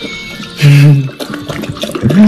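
Water running from a water dispenser into a dog's bowl, with a short, loud, steady pitched tone a little over half a second in.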